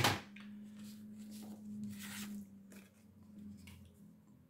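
Card stock being handled on a tabletop: a sharp paper rustle right at the start, then a few faint scrapes and taps, over a low steady hum.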